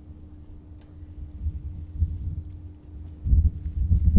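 Wind buffeting an outdoor microphone as an uneven low rumble that grows stronger near the end, with a faint steady hum underneath.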